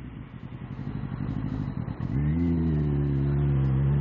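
Motorcycle engine at low revs with an uneven, pulsing rumble, then about halfway through it picks up with a short rising note and holds a steady pitch as the bike accelerates away.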